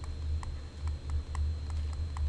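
Stylus tapping and clicking on a pen tablet while writing by hand: light, short clicks about three a second over a steady low hum.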